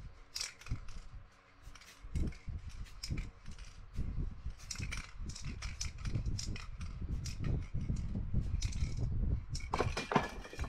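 Aerosol spray-paint can sprayed in many short, quick bursts, a run of brief hisses several a second, with knocks from handling the can.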